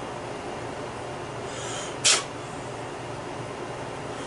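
Fingers rubbing residue off a metal pen part: a single short, scraping hiss about two seconds in, over a steady low room hum.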